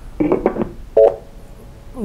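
Brief telephone-line sounds on a call-in line: a short burst, then about a second in a short electronic key-tone beep.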